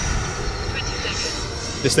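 E-flite Viper 90 mm electric ducted-fan jet, driven by an 8-cell 1500 kV motor, flying at a distance: a steady high whine over a rushing noise.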